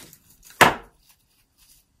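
Florist's secateurs snipping through a flower stem: one sharp, loud cut about half a second in.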